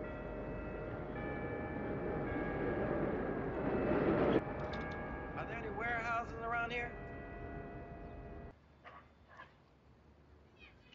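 Elevated rapid-transit train running along a viaduct, its rushing noise swelling to a peak about four seconds in and cutting off abruptly, with several steady held tones sounding over it. Brief wavering voice-like sounds come around six seconds in.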